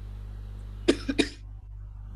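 A person coughing twice in quick succession, the first cough the louder, heard over a video call's audio with a steady low hum beneath.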